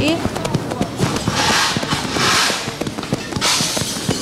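Hands patting on the chest in a crossed-arm self-tapping calming exercise: a quick, uneven run of soft pats. Two long breaths can be heard alongside, one about a second and a half in and one near the end.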